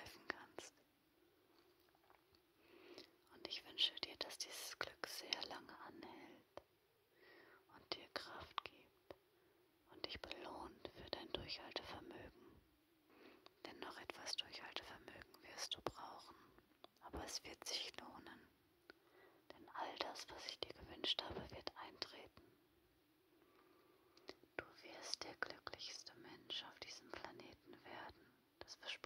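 A woman whispering in German, in soft phrases a couple of seconds long with short pauses between them.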